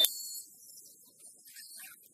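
A single sharp knock at the very start, followed by a brief high-pitched hiss that fades within about half a second and comes back faintly near the end.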